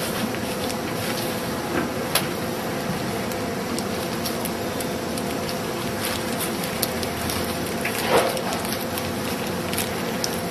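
Steady machine hum and hiss from equipment running in the room, with a few soft taps and rustles as gloved hands roll nori and rice on a wooden board.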